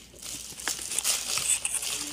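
Dense, crisp crackling and crinkling as fingers handle crispy fried chicken and its paper-lined box, starting shortly after the beginning and growing busier.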